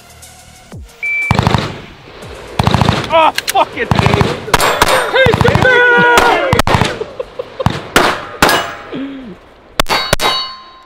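Handgun fired in quick strings of shots, starting about a second in. Ringing clangs from steel targets being hit are mixed in.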